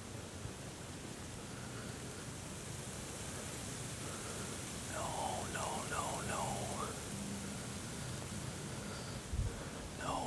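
Steady outdoor hiss of breeze and rustling grass, with soft whispering for about a second and a half halfway through and a dull low bump near the end.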